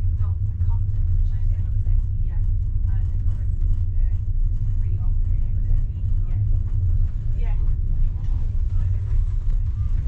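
Steady low rumble of a passenger train heard from inside the carriage, with faint voices in the background.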